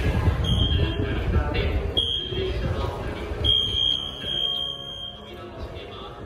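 A high, steady warning tone sounds three times at a train's departure, two short then one long of nearly two seconds, over the low rumble of the standing electric train and platform voices.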